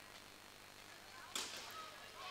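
A single sharp crack of a bat striking a softball, about one and a half seconds in, with a brief echo after it.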